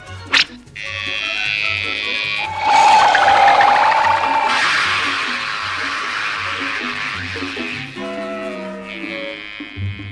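Cartoon score music with a pulsing bass line. A few seconds in it gives way to a loud rushing, hissing sound effect with a held, wavering tone on top for its first couple of seconds, standing for the little motor of an inflatable boat speeding over the water. The effect fades back into the music near the end.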